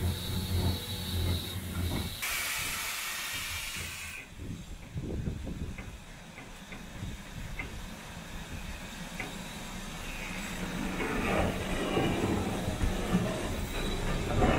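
Steam hissing from the standing steam locomotive BR Standard Class 4 2-6-0 No. 76017. About two seconds in, a loud hiss bursts out and cuts off suddenly two seconds later. After that comes quieter hissing with a few light clicks.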